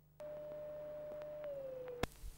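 A single steady electronic tone that starts a moment in, holds at one pitch, then slides down in pitch over the last half second, with a few faint clicks over it.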